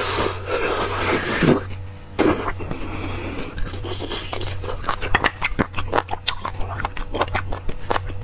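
Wet sucking and slurping at a braised marrow bone to draw the marrow out, in two long pulls during the first half, then chewing with many quick wet mouth clicks.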